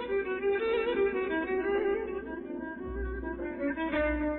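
Persian classical instrumental music in dastgah Chahargah, with a violin carrying a moving melody over a string ensemble.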